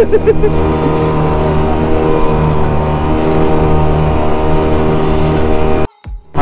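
Engine of a small open tour boat running steadily under way, a constant drone with the hiss of water against the hull. It cuts off abruptly just before the end.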